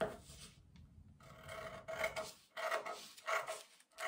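Scissors cutting through a paper sewing pattern, a series of separate rasping cuts starting about a second and a half in.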